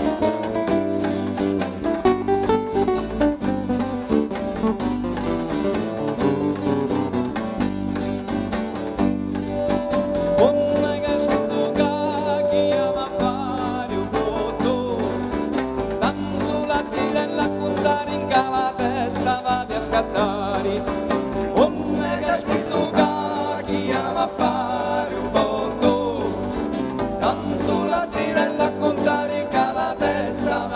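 Live band playing traditional southern Italian folk music: strummed acoustic guitars and electric bass over a fast, steady frame-drum beat, with one long held note about ten seconds in.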